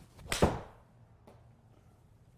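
Golf iron swung and striking a ball off a hitting mat in a small indoor simulator bay: a brief rising swish, then one sharp crack of impact about half a second in that dies away quickly. A faint tick follows about a second later.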